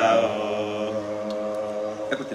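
A man's voice chanting Arabic recitation into a microphone, drawing out one long steady note that eases off near the end.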